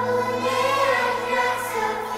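A choir singing long held notes over a sustained low bass note, in a Christian worship song.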